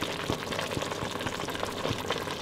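Pot of collard greens simmering in their broth (pot liquor), a steady bubbling with many small pops and clicks.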